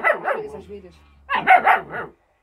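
German Shepherd puppy barking and yipping at an old dog in short high-pitched bursts: one at the start and a cluster of two or three about a second and a half in.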